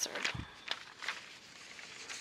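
Faint meeting-room handling noise: a few light clicks and rustles of papers being handled, with one soft low thump about half a second in.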